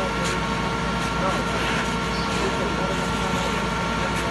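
Fire engine's motor running steadily to drive its pump, a constant hum with a few held tones, under the rushing hiss of a fire hose spraying water onto a burning car. People's voices are heard faintly in the background.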